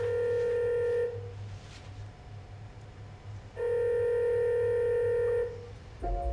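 Telephone ringing tone as heard by the caller: a steady electronic tone sounding for about a second, then again for about two seconds after a pause.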